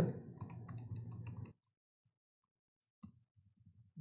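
Computer keyboard typing: a quick run of key clicks for about a second and a half, a pause, then a few more keystrokes near the end.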